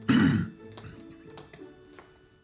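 A man clearing his throat once, a short harsh burst of about half a second at the very start, over soft background music.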